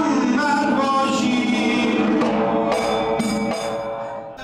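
A zurkhaneh morshed singing a long, wavering chant through a microphone, accompanying himself on the zarb (Persian goblet drum), with a few drum strokes in the second half.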